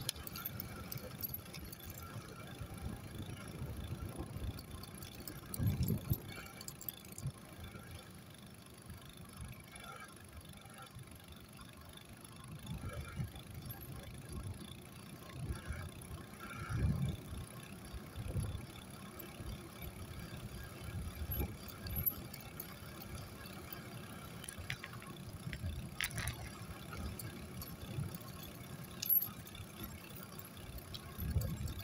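Small wheels of a scooter-like ride rolling along asphalt, a low uneven rumble that swells several times.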